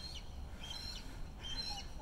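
Faint bird calls: a few short, high chirping notes repeated through the two seconds, over a low, steady outdoor background.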